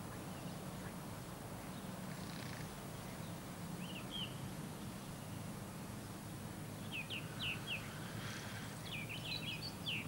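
Faint riverside outdoor ambience: a steady low hum under short, high bird chirps, a couple about four seconds in, a few more around seven seconds and a quick flurry near the end.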